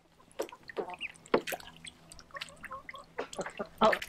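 Small splashes and drips of water as a Muscovy duck swims and dabbles in a shallow plastic kiddie pool, hunting feeder fish. There are a few short, sharp splashes scattered through.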